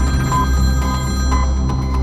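A telephone ringing in short repeated tones over background music with a heavy, steady bass.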